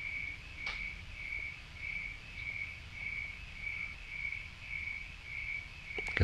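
A cricket chirping steadily, a little under two chirps a second, over a low background hum, with one faint click just under a second in.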